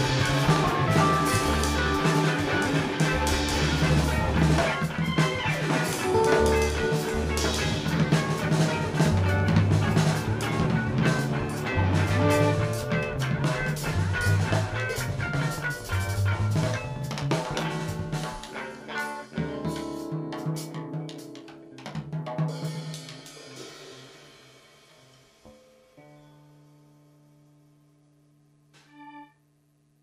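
Live rock band playing an instrumental passage on drum kit, electric guitars, bass and keyboard, with steady snare and bass-drum strokes. The song winds down and fades out over the last third, leaving only a faint steady low tone and one brief ringing note near the end.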